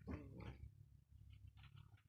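Mostly quiet, with one short, low voice-like sound lasting about half a second at the start, followed by a few faint clicks.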